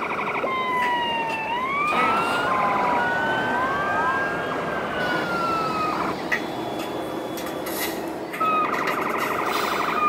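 Electronic sirens from RC model fire trucks, several siren tones sweeping up and down at once and overlapping. A rapid pulsing tone sounds in the first few seconds and again near the end.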